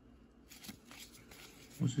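Gloved hands handling a baseball card and flipping it over, a few light cardboard ticks and rustles. A man starts speaking near the end.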